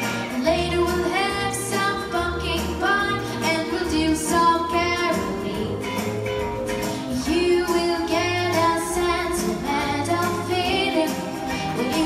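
A girl singing a Christmas song into a handheld microphone over backing music with a steady, rhythmic bass line.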